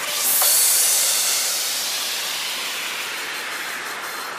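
Synthesized white-noise sweep in a UK hardcore track: a loud hiss swells up just after the start and then slowly fades away.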